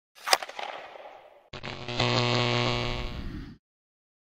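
Intro sound effects: a sharp hit that fades over about a second, then a sustained chord-like tone held for about two seconds that cuts off suddenly.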